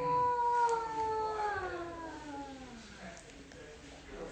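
One long wailing cry that slides slowly and smoothly down in pitch over about three seconds, then fades.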